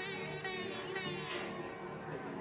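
Sitar music with sliding, bent notes over a steady drone.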